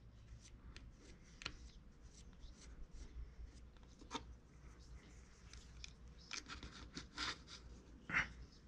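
Faint, scattered scratches and light ticks of a small wire loop tool scraping texture into a soft clay feather, with fingers handling the clay.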